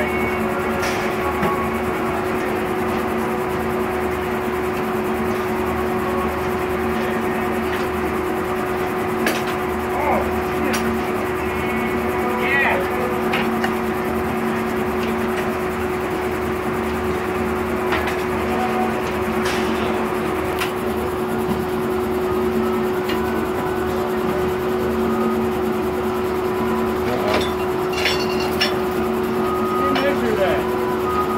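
Old circular sawmill running without cutting: the spinning blade and its drive give a steady hum, with occasional knocks and clanks as the log is set on the carriage.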